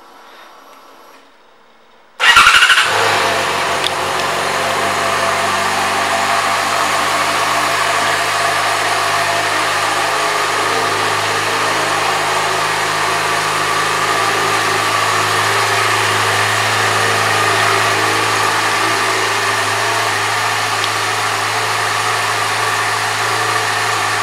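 A 2014 Yamaha FZ6R's 600 cc inline-four engine starts about two seconds in, flaring briefly in revs as it catches. It then settles into a steady idle.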